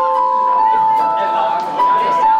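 Electronic keyboard (synthesizer) playing a slow line of clear, held notes.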